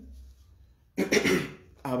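A man coughs once, a short rough burst about a second in. He starts speaking again just before the end.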